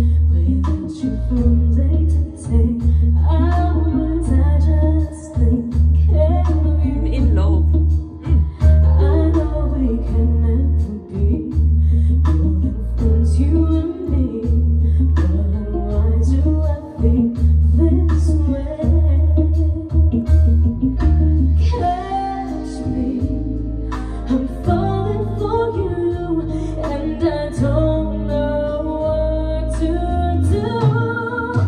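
A woman singing a pop song live with a band of drums, bass, guitar and keyboard. A little past twenty seconds in, the heavy bass line drops back and the voice carries over lighter backing.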